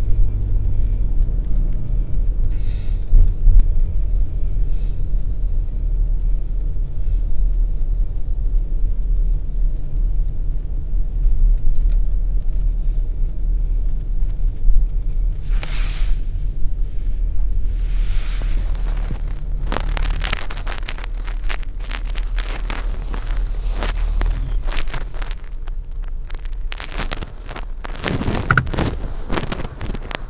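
Car engine idling, a steady low hum heard from inside the cabin. From about 16 seconds in, clothing rustles against the body-worn microphone, and the engine hum fades in the last few seconds.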